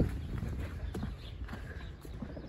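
Footsteps on a gravel track: faint, short steps a few tenths of a second apart.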